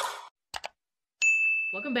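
Subscribe-button animation sound effects: a quick double mouse click, then a bright, steady, high bell ding that rings on until a voice comes in.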